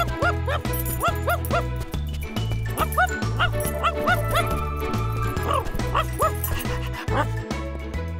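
A cartoon dog yipping and barking in quick short calls over bouncy background music with a steady bass beat.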